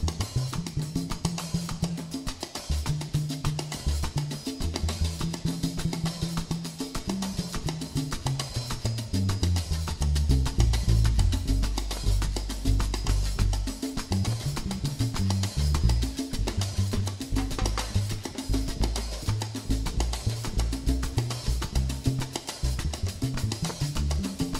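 Baby bass solo in a live salsa-style tropical band: a run of low bass notes carries the music over steady percussion, with no singing.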